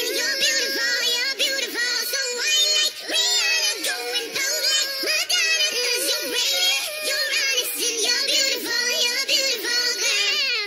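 Nightcore edit of a pop song: sped-up, pitched-up female vocals singing without a break over an electronic pop backing track.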